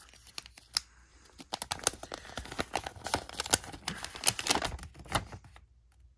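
A folded paper instruction sheet being opened out: crisp paper crinkling and crackling in a quick, irregular run that dies away near the end.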